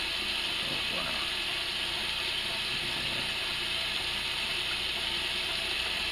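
Kitchen faucet running steadily into a stainless steel sink.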